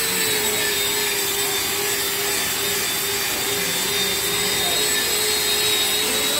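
Steady workshop machine noise: a continuous rushing hum with a held, slightly wavering mid-pitched tone and a faint high whine, unchanged throughout.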